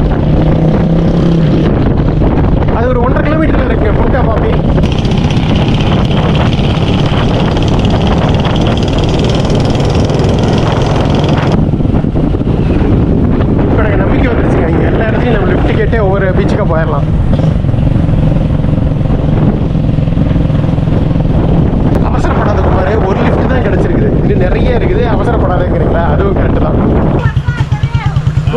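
Motorcycle engine running steadily at road speed, with wind rushing over the microphone; near the end the engine sound turns uneven as the bike slows.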